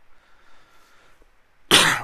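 A man coughs once into his fist: a single short, loud cough near the end, after a quiet stretch.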